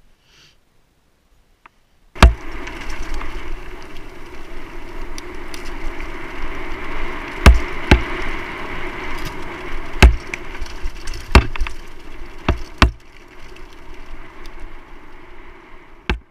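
Mountain bike ridden fast on a dirt forest trail, heard from a camera mounted on the bike: a loud continuous rattle and rush of tyres and air that starts suddenly about two seconds in, with several sharp knocks as the bike hits bumps.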